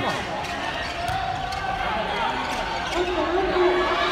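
A volleyball being struck several times in a rally, sharp hand-on-ball hits ringing in a large hall, over spectators' voices shouting and chanting.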